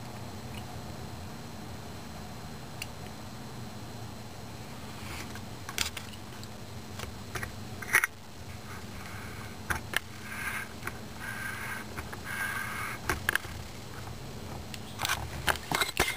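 Handling noise of a rifle-mounted scope camera: scattered clicks and scrapes over a steady low hum, the sharpest click about eight seconds in, and a run of clicks near the end as the rifle is moved.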